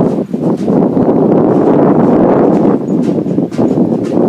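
Wind buffeting the microphone: a loud, steady rushing noise.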